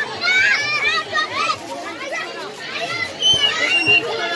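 Children shouting and chattering while they play on an inflatable bouncy castle, with a child's high, drawn-out cry near the end.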